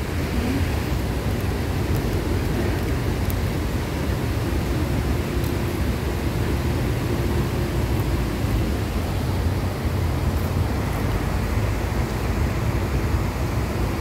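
Water pouring over a long concrete weir and rushing across shallow rocky rapids below: a steady, unbroken rushing noise with a heavy low rumble.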